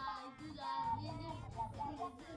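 A song: a high, child-like singing voice with backing music.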